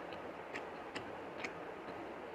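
Small, sharp wet clicks, one about every half second and not evenly spaced, from eating rice and curry by hand, over a steady low hiss.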